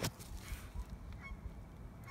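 A single sharp knock, then faint handling noise: low rustling and small scattered clicks.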